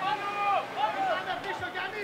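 Football match sound from the pitch: several short, faint shouts and calls from players and a few spectators, one after another.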